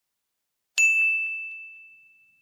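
A single bell-like ding sound effect marking the change to the next quiz slide. It strikes sharply just under a second in and rings on one high tone, fading away over about a second and a half.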